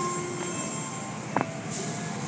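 Automatic car wash heard from inside the car: a steady rumbling wash of spray and machinery, with a brief squeak that falls sharply in pitch about one and a half seconds in.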